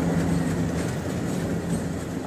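Indian Railways passenger train coaches passing close by, a steady drone of wheels running on the rails.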